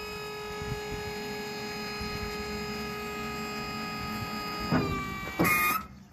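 Electric hydraulic pump unit of a retrofit kit running to power a converted trailer jack: a steady motor whine. Near the end the pitch drops, a short louder burst of noise follows, and it cuts off.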